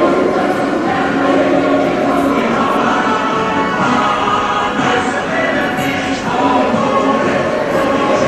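Choir singing in long held notes that shift slowly from chord to chord.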